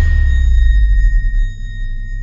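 Logo-intro sound effect: the decaying tail of a cinematic hit, a deep low boom under a thin high ringing tone, both fading, the boom dropping away about a second and a half in.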